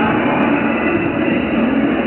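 Loud, steady background din of an indoor sports hall during a floorball game, with no single sound standing out.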